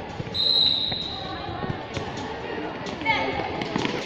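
A whistle blown once near the start, a single steady high blast of about a second, typical of a futsal referee stopping play. Around it, voices shout and call, and a ball thuds on the hard court.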